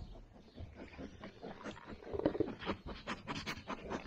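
Sheep eating hand-fed vegetable scraps: irregular crunching and rustling, busier in the second half.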